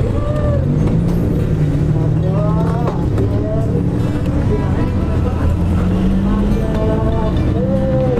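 Motorcycle engine running steadily, its pitch rising a few times, with voices over it.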